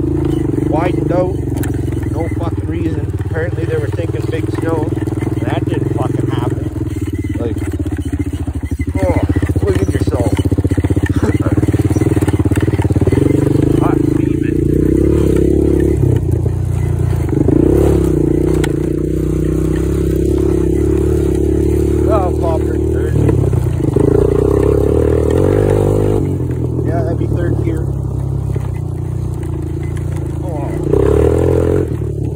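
Honda TRX250EX quad's single-cylinder four-stroke engine running while riding, its note rising and falling several times as the throttle is worked.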